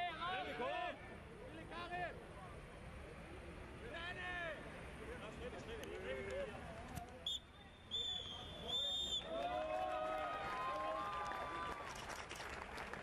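Footballers shouting across the pitch, then a referee's whistle blown three times about seven seconds in, the last blast the longest: the final whistle ending the match. Shouted voices follow.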